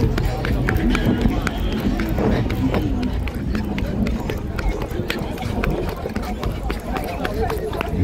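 Footsteps of a person running with the camera, a quick run of sharp footfalls over rumbling handling and wind noise on the microphone, with voices of the crowd in the background.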